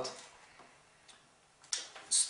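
A single short, sharp click about three-quarters of the way through an otherwise quiet pause.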